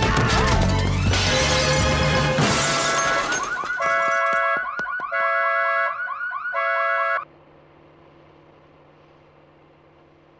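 Loud music with crashing, then a car alarm's repeating steady beeps and swooping tones for about three seconds. It cuts off suddenly about seven seconds in, leaving a faint low hum.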